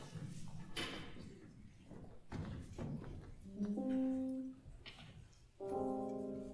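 A few soft thumps and some rustling, then two short held notes from the band's instruments: a single pitch stepping up about three and a half seconds in, then a brief chord of several tones near the end, sounded just before the piece begins.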